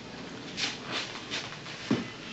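Rustling of a heavy field jacket as arms are folded across the chest: a few short rustles, then a single dull knock near the end.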